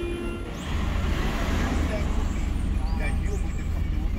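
Low, steady rumble of a taxi cab's idling engine heard from inside the cabin, starting less than a second in after a moment of quieter ambience.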